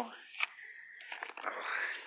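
A gift-wrapped book being handled and pulled off a shelf: a light knock about half a second in, then wrapping paper rustling, growing louder toward the end.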